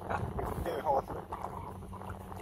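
Short wordless vocal sounds from people, over a low steady background rumble.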